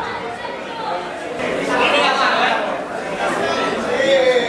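Overlapping chatter of many spectators' voices, no single speaker clear, with one louder voice rising about two seconds in.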